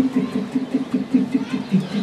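A man's voice repeating a short syllable rapidly, about five times a second, imitating the tapping of many carvers' hammers on metal pins in rock.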